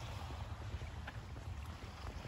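Wind buffeting the microphone as a low, unsteady rumble, over a faint open-air hiss.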